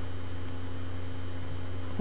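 A steady low electrical hum with a faint even hiss, unchanging throughout.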